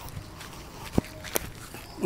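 Quiet footsteps on grass, with two sharp clicks about a second in, a third of a second apart.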